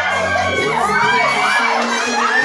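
A crowd of young people shouting and cheering excitedly, many voices at once, over music whose bass drops out less than a second in.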